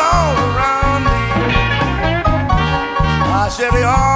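Live blues band playing an instrumental passage between vocal lines: tenor saxophone and trumpet playing melodic lines that bend and slide, over a bass line that moves note by note.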